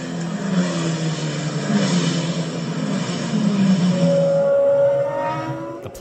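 A car engine running and accelerating, its pitch climbing and dropping back several times as if shifting through gears, with a higher whine rising in the last two seconds before it fades out.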